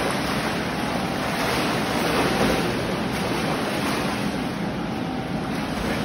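A swimmer's arm strokes and kicks splashing water steadily, in gentle swells rather than separate splashes.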